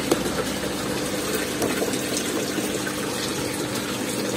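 Water running steadily into a tub of young koi, with a faint steady hum underneath.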